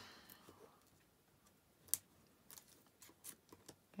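Faint clicks and rustles of metal tweezers working the backing paper off a small foam adhesive dimensional on a die-cut paper sun, with one sharper click about two seconds in.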